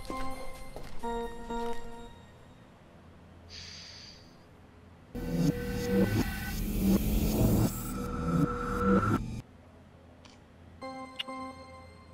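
Background music: a run of short notes, a quieter stretch, then a louder, fuller passage from about five seconds in that breaks off abruptly around nine seconds, with the short notes returning near the end.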